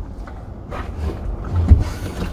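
Truck engine idling, heard from inside the cab as a steady low rumble, with one low thump near the end.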